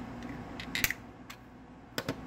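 A few small plastic clicks and snaps, the sharpest a little under a second in, as the folded Eachine E52 pocket drone is handled and its battery pulled out of the body.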